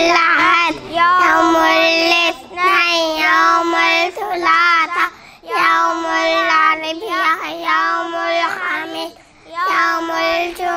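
A child singing into a microphone without accompaniment: long, held notes with a slight waver, in phrases of one to three seconds with short breaks between.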